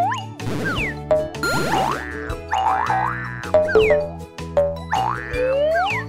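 Playful children's cartoon music with springy boing sound effects: repeated swooping glides that rise and fall in pitch, over a steady bass line.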